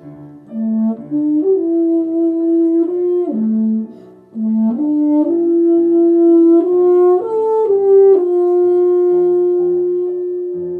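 Euphonium playing a slow legato melody of held notes that step up and down, with a brief break for breath a few seconds in, ending on a long held note near the end. A quieter low accompaniment sounds beneath it.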